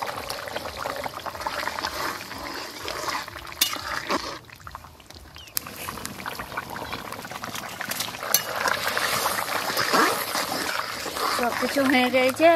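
Potato curry simmering in an open metal pan over a wood fire: a steady wet bubbling with scattered small pops, which drops away briefly a little before the middle. A voice is heard near the end.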